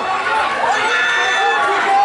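Small crowd of spectators shouting and chattering over one another. One voice holds a long high call about a second in.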